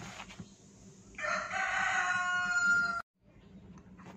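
A single long, pitched animal call in the background, held for nearly two seconds at an almost steady pitch and cut off suddenly.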